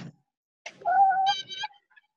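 A cat meowing once: a single drawn-out call about a second long that jumps up in pitch partway through.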